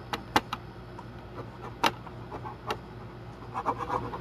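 Pen on paper during hand drawing: scattered short, sharp taps and clicks, with a quick little run of them near the end, over a steady low hum.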